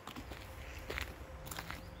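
Faint, irregular footsteps crunching on a gravel path.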